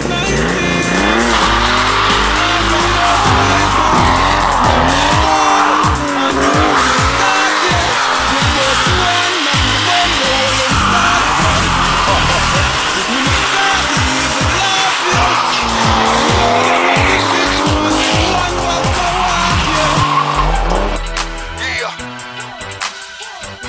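Toyota Supra doing a burnout: the engine revs up and down again and again while the tyres squeal against the tarmac. About a second before the end it cuts off and music takes over.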